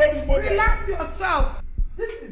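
A low, heartbeat-like pulse about twice a second under a drawn-out voice whose pitch wavers and slides downward. The sound drops out briefly near the end.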